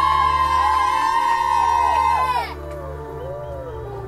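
Several whistling fireworks sounding together in steady high tones, with sliding pitches among them. The whistles bend down in pitch as they burn out and stop together about two and a half seconds in.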